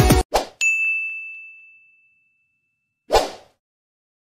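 Editing sound effects: electronic music cuts off, a short whoosh follows, then a single bright bell-like ding rings out and fades over about a second and a half. Another short whoosh comes near the end.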